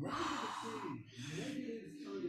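A person breathing hard, two long breaths of about a second each, from exertion during a workout, with faint voices underneath.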